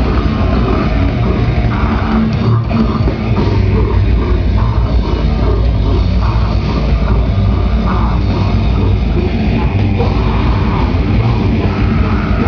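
A live extreme-metal band playing loud, with distorted electric guitars and a drum kit, recorded from among the crowd right at the stage.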